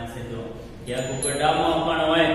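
A man's voice reading aloud in a chant-like, sing-song way, with a brief pause in the first second before the voice picks up again.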